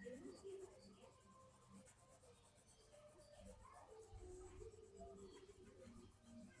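Faint scratching of a pencil shading on paper in quick, repeated strokes.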